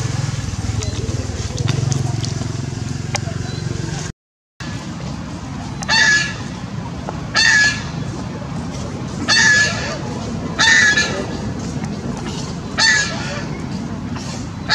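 A young macaque crying: a series of six short, loud, high-pitched cries, one every one and a half to two seconds, starting about six seconds in.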